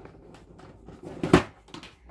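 Cardboard puzzle box being pried open: faint rubbing of cardboard, then one short loud scuff a little over a second in as the inner box comes free of the lid, and a small knock near the end.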